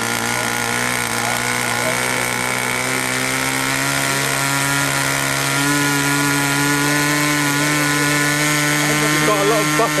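Small model aircraft engine running steadily at a fast buzz, its pitch creeping up over the first few seconds and stepping up slightly about six seconds in.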